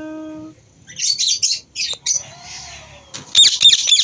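Yellow (lutino) Indian ringneck parakeet giving harsh, high-pitched squawks: a short burst about a second in, then a louder run of screeches near the end.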